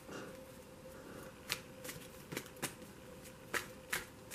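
A tarot deck being shuffled by hand: faint card rustle, then from about a second and a half in a run of sharp, irregular clicks as the cards knock together.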